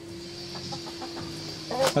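Chickens clucking quietly, with a faint steady hum underneath.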